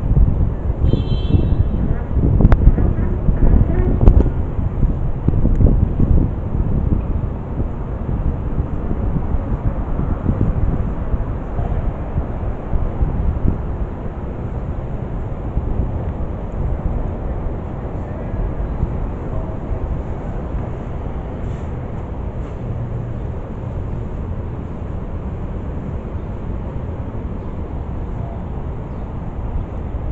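Wind buffeting a body-worn camera's microphone outdoors: a steady low rumble, gustier and louder in the first several seconds before it settles.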